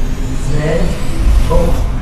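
A deep low rumble that swells about a second in, with short voice-like murmurs over it.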